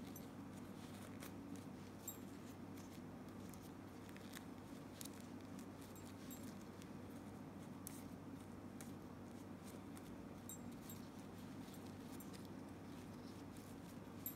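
Faint rustling and scattered small clicks of a satin ribbon bow being pinched and fluffed by hand, over a low steady hum.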